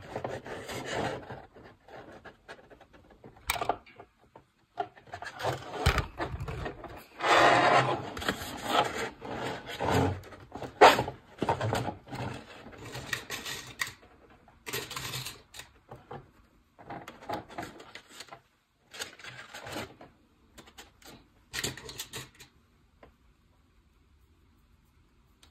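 Paper plates rustling and rubbing against each other as they are handled and clipped together with paper clips, in irregular bursts with a few sharp clicks. The handling thins out to occasional small noises in the second half.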